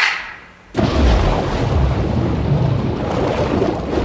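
A single sharp clap of two wooden blocks struck together as a race-start signal, ringing briefly. Then, under a second in, a sudden loud rush of water noise with a deep rumble as the swimmer dives and swims underwater, a film soundtrack played over a hall's speakers.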